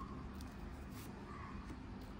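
Faint soft clicks and rustle of a tarot deck being handled as a card is drawn and laid down, over a low steady room hum.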